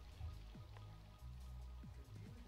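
Faint background music: low held notes with a few short falling tones.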